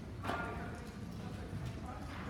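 A woman's voice, a brief spoken phrase about a quarter of a second in, then the room noise of a conference hall with faint voices.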